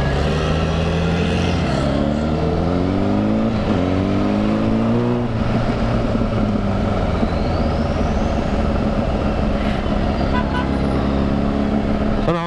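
Honda sport-bike engine running under way. The revs climb from about two seconds in, drop briefly as it shifts gear, climb again, then settle into a steady cruise, with a constant rush of road and wind noise.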